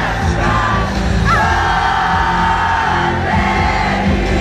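Live rock band playing in an arena, with a singer's voice over the band and crowd. About a second in, the voice holds one long high note with a quick upward flick at its start, lasting about two seconds.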